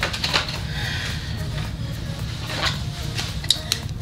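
Paper cards and a cardboard box being handled: light rustling with scattered soft clicks and taps, over a steady low hum.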